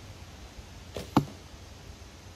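One shot from an Asiatic horsebow (AF Ming) loosing a carbon arrow, about a second in: a faint click, then a single sharp, loud snap of the released bowstring with a brief low ring after it.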